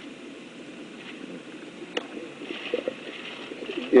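A pause between sentences of a speech: low room noise with a single sharp click about two seconds in and a faint low murmur a little later.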